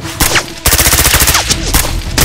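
Rapid automatic gunfire: a short burst, then from just over half a second in a fast, even stream of shots, loud and with a short break near the end.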